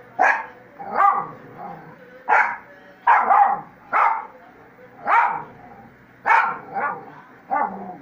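Miniature pinscher barking: about ten short, sharp barks at uneven intervals.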